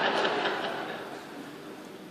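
Audience noise in a large hall, laughter and murmur after a joke, dying away over the first second or so and leaving a steady low hiss of room noise.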